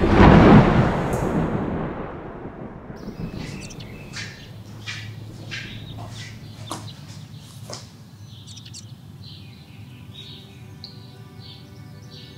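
A deep boom at the start fades away over about two seconds. Then birds chirp in short, repeated calls.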